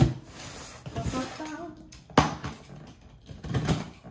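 Box cutter slitting the packing tape along a cardboard shipping box, with a couple of sharp knocks from the box being handled, one at the start and one about two seconds in.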